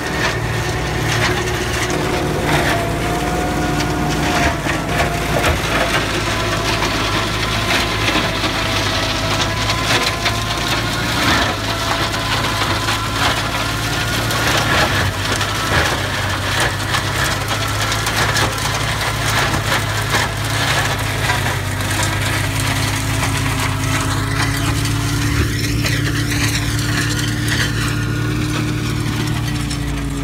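Tractor-mounted Kadıoğlu DP220 branch shredder running under load, its rotor chopping pruned orchard branches with continuous crackling and splintering over the steady drone of the tractor engine.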